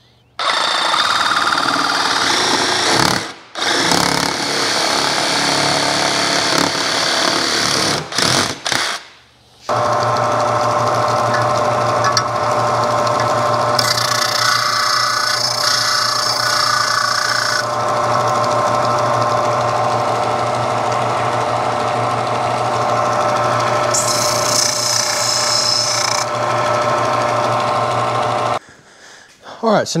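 A handheld power tool cutting ABS plastic sheet in three runs over the first nine seconds. Then a small benchtop disc sander runs with a steady motor hum, with a higher rasping hiss twice as the ABS piece is pressed against the disc.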